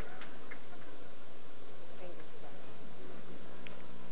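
Steady hiss with a thin, high, unchanging whine, the noise floor of an old videotape recording. There are only faint traces of voices, and no distinct ball roll or pin crash stands out.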